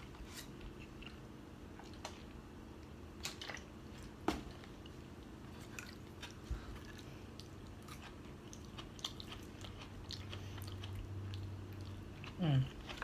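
A person chewing a mouthful of food close to the microphone, with soft mouth sounds and a few short sharp clicks, the sharpest about four seconds in.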